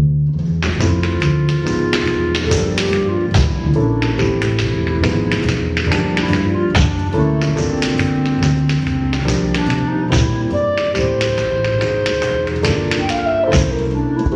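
Piano music with a swing beat, and tap shoes striking a hard floor in time with it as a tap-dance step is danced.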